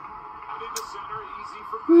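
A baseball game on television: a steady crowd hum with faint announcer speech under it, and one short click about three-quarters of a second in. Just before the end a man lets out a loud 'whew' that falls in pitch.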